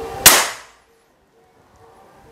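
A single sharp crack from a shot of a locally made FX Impact MK2-style PCP bullpup air rifle, dying away within half a second. It is a power-test shot that the chronograph clocks at 922.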